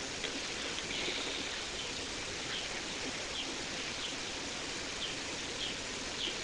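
Steady background hiss with faint, short bird chirps repeating about once a second.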